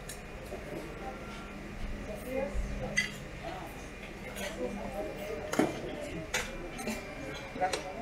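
Serving utensils clinking against steel buffet trays and plates, a handful of sharp clinks spread through the seconds, the loudest a little past halfway, over a murmur of voices.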